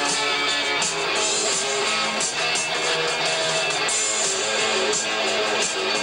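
Rock band playing live: electric guitars over bass guitar and drums, with cymbals striking in a steady rhythm.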